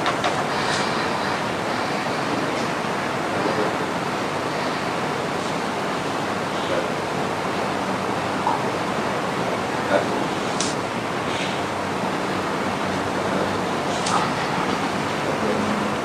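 Steady rushing background noise with no clear pitch, with a few faint clicks and soft voice sounds over it.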